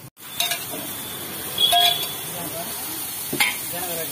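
A dosa cooking on a hot flat griddle: a steady sizzle, with a metal utensil scraping and clinking on the griddle. A loud ringing clink comes about two seconds in and a sharper strike near the end.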